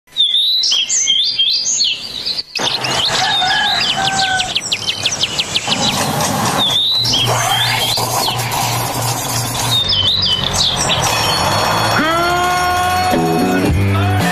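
Birds chirping, joined about seven seconds in by an opening theme with a steady low bass; about twelve seconds in several tones rise in pitch together as the music builds.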